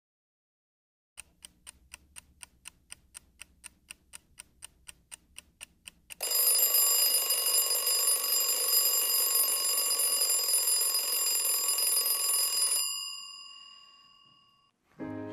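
Alarm clock ticking at about four ticks a second, then its bell ringing loudly for about six seconds before it cuts off suddenly, with a short fading ring.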